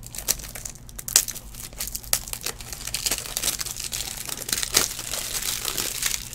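Plastic card packaging crinkling and tearing as it is handled and torn open: a run of sharp crinkles that grows denser in the second half.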